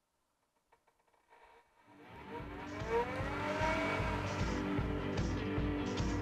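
About two seconds in, background music with a steady beat fades in. Under it is a rising whine as the Retrotec DucTester fan is turned up to higher speed.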